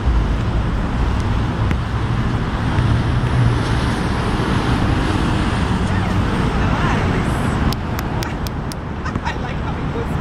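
Steady, loud outdoor background noise with a heavy low rumble.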